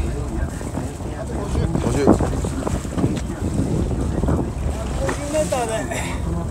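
Wind buffeting the microphone on a boat at sea, over a steady low rumble, with a voice calling out briefly near the end.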